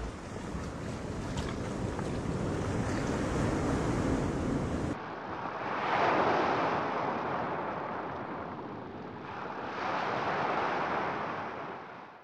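Ocean surf washing steadily for about five seconds, then, after a cut, two waves swelling and receding about four seconds apart before the sound fades out.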